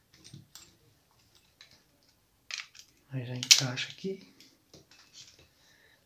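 Light clicks and knocks of a baitcasting reel's plastic and metal parts being handled and set down, the loudest a sharp click about three and a half seconds in. A voice is heard briefly around the middle.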